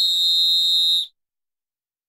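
A TV title-graphic sound effect: a steady, high whistle-like tone over fainter, slowly falling lower tones. It cuts off abruptly about a second in.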